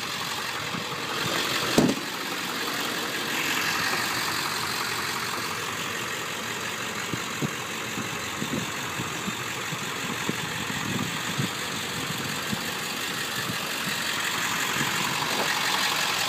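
1999 Ford F-350's 7.3-litre Power Stroke V8 turbo-diesel idling steadily, with a single knock about two seconds in.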